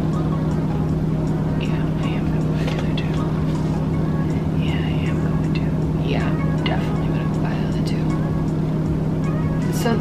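A steady low hum throughout, with soft, faint bits of a woman's voice now and then.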